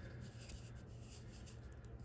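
Faint rustling of a paper scratch-off lottery ticket being handled, fingertips brushing and sliding on the card in a few light strokes, over a low steady hum.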